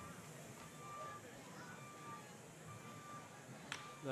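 A single sharp crack of a wooden baseball bat fouling off a pitch near the end, over faint ballpark background sound.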